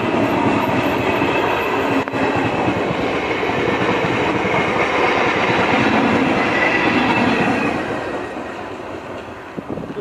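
Electric suburban train passing close by at speed: a steady loud rush of wheels on the rails, with one sharp knock about two seconds in. The noise fades over the last couple of seconds as the train runs off into the distance.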